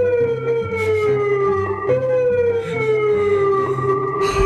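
Siren sound played through a portable loudspeaker: a wailing tone that falls slowly over about two seconds, jumps back up and falls again.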